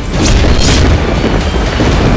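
Dramatic TV news title music: a loud boom-like impact hits right at the start with whooshing sweeps over a deep rumble, after a steady pulsing beat.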